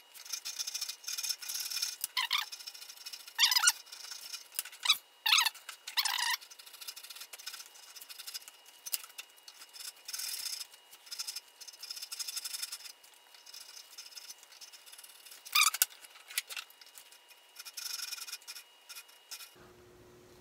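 Fine-toothed hand saw cutting a narrow kerf into a wooden saw handle, with scraping strokes in uneven bursts and a few sharper strokes.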